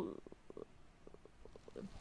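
A woman's faint, creaky hesitation between words, a drawn-out low rattle of irregular pulses, with her voice resuming near the end.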